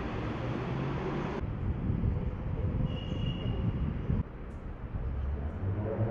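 A steady low rumble of vehicle engine and road noise with a faint hum in it. The background changes abruptly twice, and a brief high beep comes about three seconds in.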